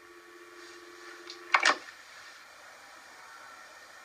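Telephone dial tone, two steady tones sounding together in the receiver after the other party has hung up. It stops about a second and a half in with a short clunk as the handset is put down.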